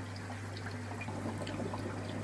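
Quiet, steady trickle of water from an aquarium's filter or water circulation, with a low, steady hum underneath.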